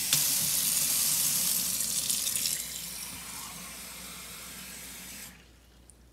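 Kitchen faucet turned on suddenly, water running into the bottom water chamber of a stovetop espresso pot to fill it. The flow is loudest for the first two or three seconds, then quieter and steady, and is shut off a little after five seconds in.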